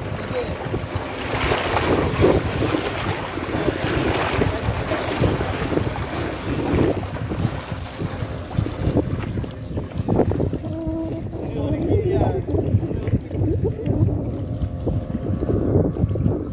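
Wind buffeting the microphone over seawater washing against the rocks of a breakwater: a steady, rumbling rush.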